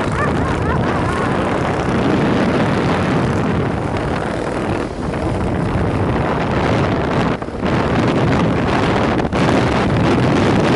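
Wind rushing over the microphone of a camera mounted on a moving motorcycle, with the motorcycle's engine running underneath. The noise dips briefly three times.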